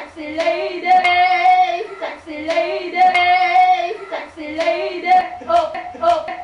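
Voices singing a chant-like tune in held, evenly paced notes, with sharp hand claps between the phrases.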